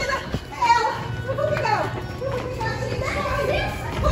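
Several children shrieking and yelling without clear words as they run. Background music plays underneath.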